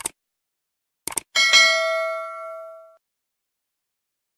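Subscribe-button end-screen sound effect: a short click, two quick clicks just after a second in, then a bright notification-bell ding that rings and fades out over about a second and a half.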